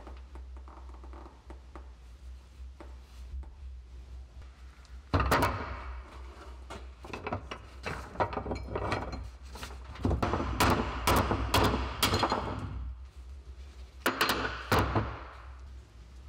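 Hammer blows on a steel drift punch, driving the old wooden handle remnant out of a resin-filled axe eye. Quiet handling at first, then a long run of sharp strikes in clusters starting about five seconds in and stopping just before the end.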